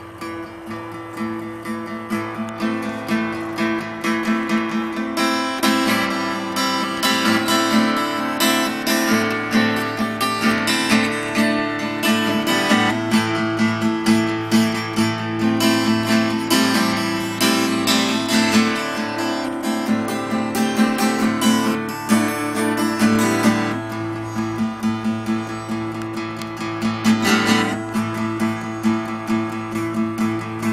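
Acoustic guitar strummed in a steady rhythm, the instrumental introduction before the vocal comes in; the strumming gets louder about five seconds in.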